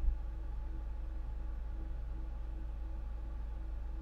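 Steady low hum with a faint higher tone above it, and a brief low thump at the very start.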